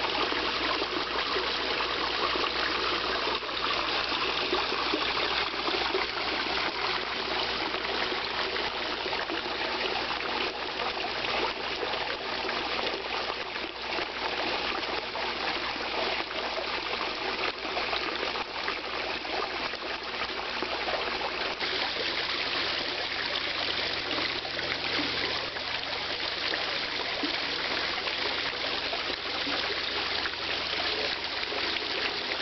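Water running steadily into a koi pond, a continuous trickling, splashing flow with no breaks.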